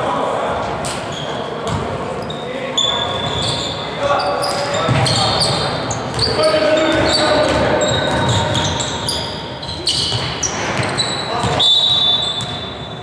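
Basketball being dribbled on a hardwood gym floor, with short high sneaker squeaks and players' voices calling out, echoing in a large sports hall.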